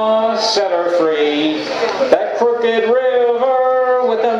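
A man singing a folk song chorus in a lone voice, drawing out long held notes.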